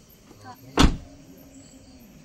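A car door slammed shut: one sharp, loud thud a little before the middle.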